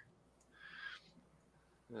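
Near silence: room tone, with one faint, brief breathy sound about half a second in. A man's voice starts right at the end.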